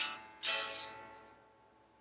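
Electric guitar playing the closing chords of a song: a strum at the start and a last, stronger strum about half a second in that rings out and fades away.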